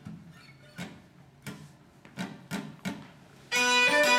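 A few sharp, separate taps. Then, about three and a half seconds in, a string band of fiddle, acoustic guitar and mandolin starts a ragtime tune together, loudly.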